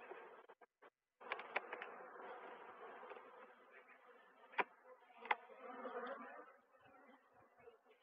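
Honeybees buzzing faintly at an open hive whose super is packed with bees, with two sharp clicks a little over halfway through as a metal hive tool pries at a frame.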